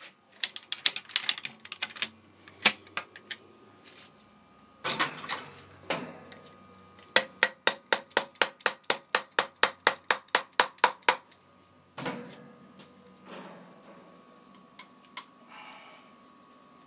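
Ratchet mechanism of a crossbow copper tube bender: scattered metallic clicks and knocks as the tool is handled, then an even run of about twenty sharp clicks, some five a second, lasting about four seconds midway through.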